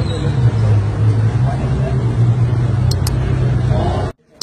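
A car engine idling steadily among people talking, with two short ticks about three seconds in.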